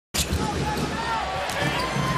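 Basketball bouncing on a hardwood court, with arena crowd noise and indistinct voices.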